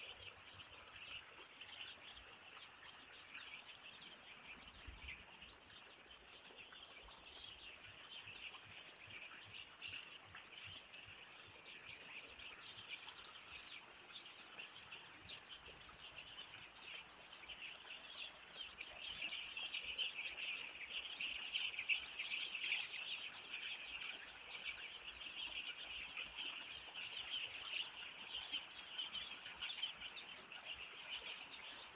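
A flock of eight-day-old chicks peeping in a continuous high chorus, louder in the second half. Scattered short, sharp ticks sound over it.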